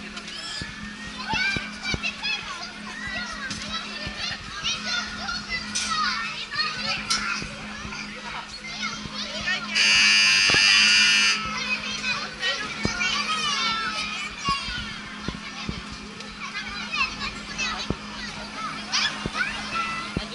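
Children shouting and squealing on a spinning fairground ride, over a steady low hum. About halfway through, a loud, high, held sound lasts about a second and a half.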